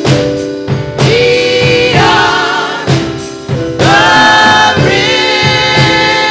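Gospel choir singing a slow hymn in long, wavering held notes, with drums keeping a steady beat underneath.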